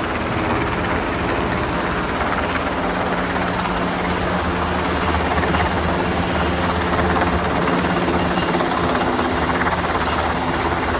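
MH-60S Seahawk helicopter flying overhead, its rotor and twin turbine engines running steadily and growing a little louder about halfway through as it comes nearer.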